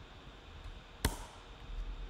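A single sharp keystroke on a computer keyboard about a second in, over faint low room hum.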